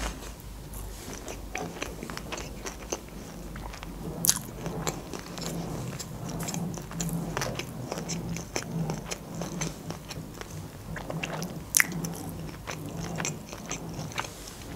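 A person chewing a mouthful of sushi rolls with the mouth closed: a steady run of small mouth clicks and smacks, with two sharper ones about four seconds in and again later.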